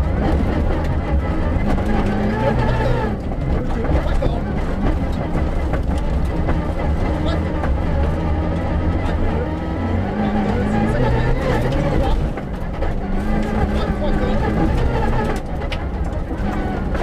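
Rally car engine heard from inside the cabin, repeatedly revving up and dropping as it changes gear. Under it is a constant heavy rumble of the car running over a dirt road.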